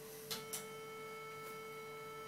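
A faint, steady sine-wave test tone just under 500 Hz, with two clicks about a third and half a second in as a DIY tube distortion pedal (two 12AX7 tubes) is switched on. From then the tone carries a row of added higher overtones: the pedal's soft clipping of the sine.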